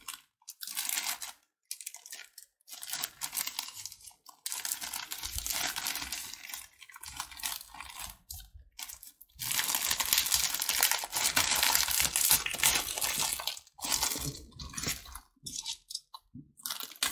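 Sealed plastic packets of small crunchy sweets being squeezed and handled: the plastic crinkles and the packed pieces crunch inside. The sound comes in bursts with short gaps, and the longest, loudest stretch comes a little past halfway.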